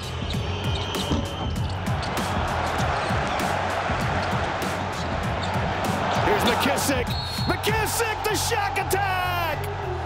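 A packed basketball arena crowd making a constant loud din, with the ball bouncing and sneakers squeaking on the court, the squeaks coming more often in the second half, under a steady background music track.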